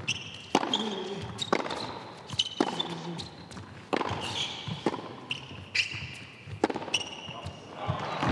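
Tennis rally on an indoor hard court: racket strikes and ball bounces, sharp hits every half second to a second, with short high shoe squeaks on the court surface between them.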